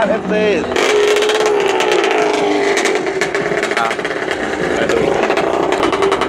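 A drag-racing motorcycle's engine runs at the start line with a rapid crackle from its open exhaust. A PA announcer's voice is heard at the very start and again near the end.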